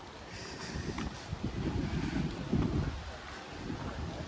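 Wind buffeting the microphone of a handheld phone carried outdoors, an uneven low rumble that rises and falls in gusts.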